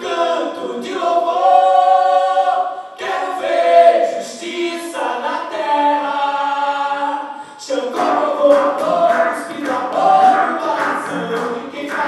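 Several voices singing a song together in harmony, holding long notes, with little or no instrumental backing. About eight seconds in, quick, light percussive strikes join the singing.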